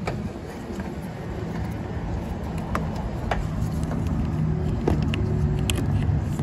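A low, steady vehicle engine drone runs throughout, with a few light clicks, about five, spread across the few seconds.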